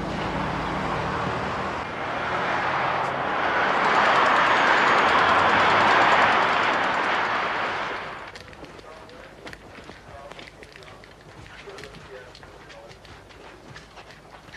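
Car engine hum and road noise, swelling as the car drives past, then dropping away suddenly about eight seconds in. After that come quieter scattered light taps of footsteps on a hallway floor.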